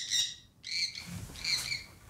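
Sun conure giving three short, high squawks.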